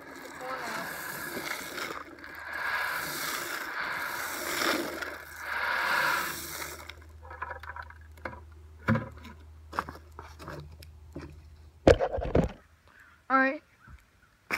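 Shelled corn pours out of a plastic bucket onto the ground, a steady rattling hiss of kernels for about seven seconds. Then come scattered clicks and knocks of handling, with a heavy thump about twelve seconds in.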